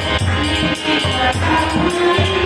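Devotional kirtan music: voices singing with a violin and small hand cymbals (kartals), over a steady low beat.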